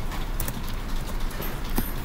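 Computer keyboard keystrokes: a few separate, irregularly spaced key clicks.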